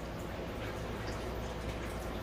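Steady low background hiss with a faint low hum, with no distinct events: room tone.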